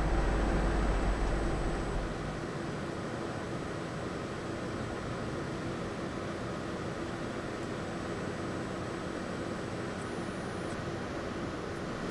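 Steady hum and hiss of laboratory equipment and ventilation. A deep rumble underneath stops about two seconds in.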